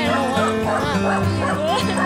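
Background music with a dog yipping and whining over it in short, gliding cries.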